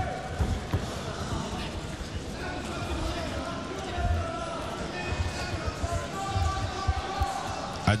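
Dull thuds of fighters' bodies and feet against the cage mat and fence during a clinch and lift, under faint background voices.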